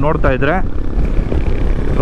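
Royal Enfield Himalayan 450's single-cylinder engine running at steady highway cruising speed, mixed with wind noise on the microphone.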